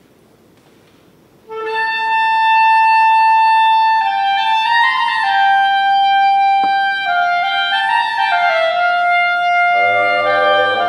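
After a near-silent pause, a solo clarinet comes in about a second and a half in. It holds a long high note, then plays a falling, winding melody. The full concert band joins with lower, fuller sound near the end.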